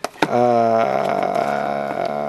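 A man's long, drawn-out hesitation sound, a held "uhhh", lasting nearly three seconds. It is preceded by a brief click or two.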